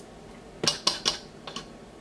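White PVC pipe pieces and fittings clacking against a hard plastic toolbox lid as they are set down, about five sharp knocks in quick succession, starting just over half a second in.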